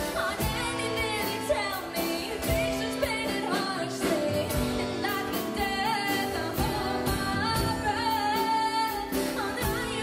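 A woman singing a pop song live into a microphone, backed by a band with acoustic guitar and a drum kit keeping a steady beat.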